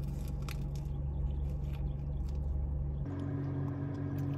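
A person biting and chewing a breakfast sandwich, with small clicks and mouth sounds, over a steady low hum inside a car. About three seconds in, the hum shifts and a steady higher tone comes in.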